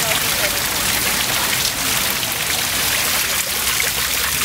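Steady hiss of falling water: water trickling and spattering off rock and wet leaves, like rain.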